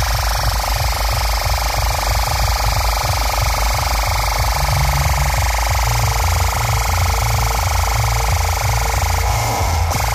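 A huge outdoor DJ sound system (Devil Audio) playing a deep, pounding bass beat at full volume. The bass hits repeat without pause, and the recording is overloaded and distorted.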